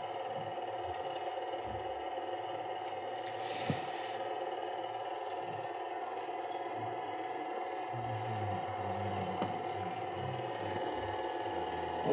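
Steady hum with hiss, with several faint held tones, and one small click a little under four seconds in.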